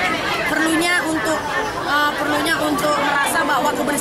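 A woman speaking Indonesian, talking on without a break.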